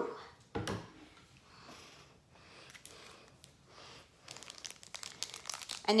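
A single thump about half a second in, then the crinkling of a foil Pokémon card booster pack wrapper being handled, growing busier over the last two seconds.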